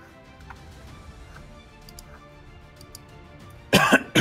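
A man coughs twice near the end, sharp and loud. Under it, faint steady background music runs, with a few faint clicks.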